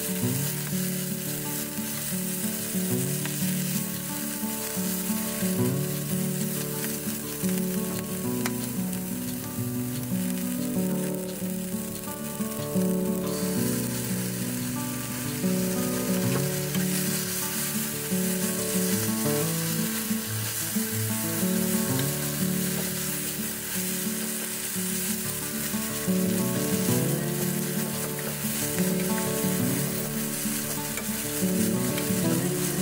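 Tsuruna leaves and okawakame dumpling sticks sizzling in a nonstick frying pan, stirred and tossed with a wooden spatula. Background music with held notes plays underneath.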